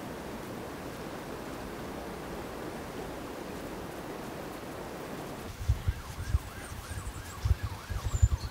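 Steady rush of river water flowing past. About five and a half seconds in it gives way to irregular low thumps on the microphone, with a faint wavering siren in the distance.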